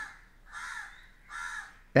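A bird calling twice, each a harsh, raspy call about half a second long.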